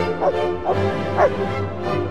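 A German shepherd barking, four short barks in the first second and a half, over background music.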